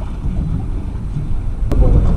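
Wind rumbling on the microphone aboard a boat on open water, with one sharp click near the end.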